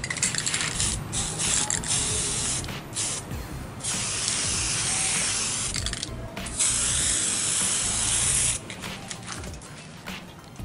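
Aerosol spray-paint can hissing in three long bursts, the last one stopping about a second and a half before the end.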